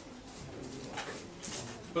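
Stick of chalk on a blackboard: a few short, quick strokes as hatching lines are drawn, about a second in and again around a second and a half in.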